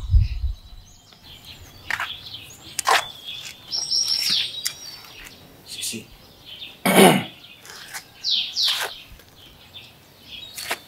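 Small birds chirping and tweeting in short, scattered high calls, with a low thud at the very start and one louder short sound about seven seconds in.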